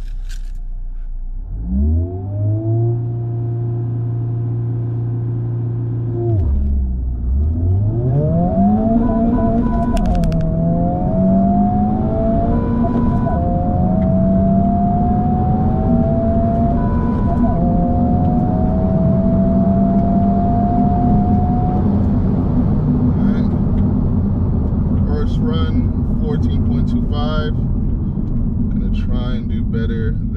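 Honda Civic Type R (FL5) 2.0-litre turbocharged four-cylinder, heard from inside the cabin on a quarter-mile launch. The revs rise and are held steady for a few seconds, dip as the clutch is let out, then climb in pitch in steps through several upshifts. The engine note fades about two-thirds of the way in, leaving road and wind noise.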